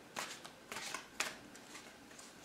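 Deck of tarot cards handled in the hands: a few short, faint card rustles and flicks.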